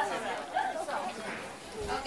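Low murmur of many people talking at once, with no single voice standing out.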